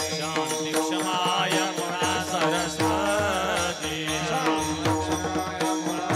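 Man singing a devotional kirtan song into a microphone, with his voice bending and sliding between notes, over instrumental accompaniment of steady held notes and regular drum strokes.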